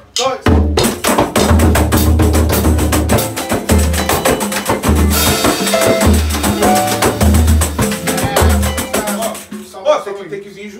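Pagode band playing together: a drum kit, a tantan and a pandeiro beating a busy samba rhythm over cavaquinho and acoustic guitar, with deep drum pulses underneath. The music starts about half a second in and breaks off near the end.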